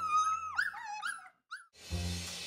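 A young pet's high-pitched cries: several short squeaky calls in quick succession, each rising and falling in pitch, stopping after about a second and a half.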